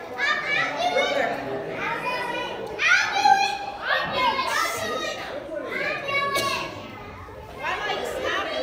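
Many children's voices calling out over one another, mixed with adult talk, in a large hall.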